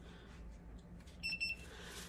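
Handheld infrared thermometer giving one short, high electronic beep about a second in as it takes a temperature reading.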